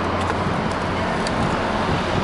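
Steady city street traffic noise: a continuous low hum of road vehicles.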